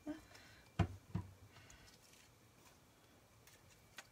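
Crafting items handled on a cutting mat while a glued card panel is being set in place: two short knocks close together about a second in, then faint handling noise.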